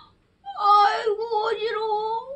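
A woman's voice giving one long, wavering moan, starting about half a second in and rising slightly at the end, acted out as a storyteller's sound of dizziness.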